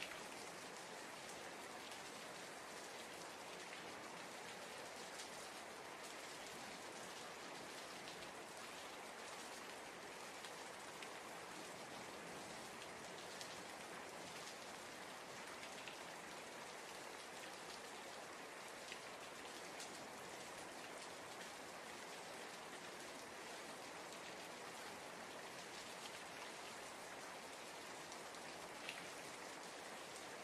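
Steady rain falling, with a few louder drop taps here and there.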